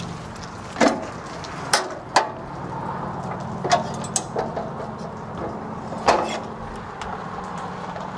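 Folding metal entry steps of a fifth-wheel trailer being folded up and stowed into the doorway: a series of separate clanks and knocks, the loudest about a second in, about two seconds in and around six seconds in, over a steady low hum.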